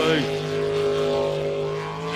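Jet sprint boat's engine running hard at racing speed, a steady drone holding one pitch.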